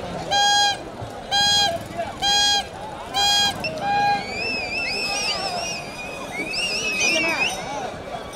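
A horn honks five short, identical notes, about one a second, then a shrill, wavering whistle runs for about three seconds, over crowd voices.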